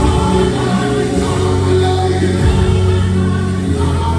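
Live gospel worship music: many voices singing together over long held bass notes.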